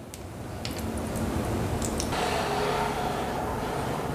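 Hot frying oil bubbling faintly under a wire skimmer of draining croquettes, with a few light clicks in the first two seconds. A soft, steady hum joins in about halfway.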